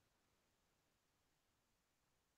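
Near silence: a faint, even background hiss with no distinct sounds.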